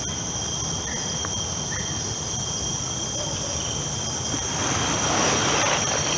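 Insects in the tree canopy keeping up a steady high-pitched drone of several held tones, over a low background noise that grows a little after about four seconds.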